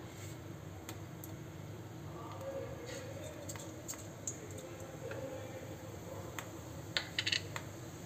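Cumin seeds dropped into hot mustard oil in an iron kadhai, frying with faint crackling and scattered pops over a steady low hum, and a quick run of sharper pops about seven seconds in.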